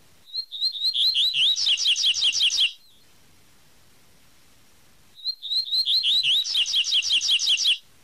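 Double-collared seedeater (coleiro) singing its 'tui tui' song: two high phrases, each about two and a half seconds long, starting with a few spaced notes that quicken into a fast run of repeated notes, with a pause of about two and a half seconds between them.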